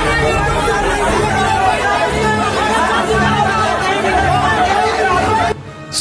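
A crowd of many voices talking and calling out at once, with a steady music beat underneath. The sound drops away suddenly just before the end.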